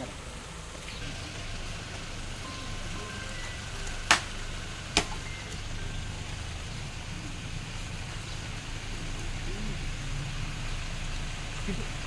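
Steady outdoor background noise with faint voices of people nearby, broken about four seconds in by two sharp cracks a second apart.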